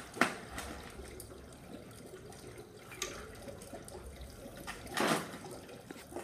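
Dry ice sublimating vigorously in a cylinder of water, bubbling and churning steadily. A sharp knock comes just after the start, and a brief louder noise about five seconds in.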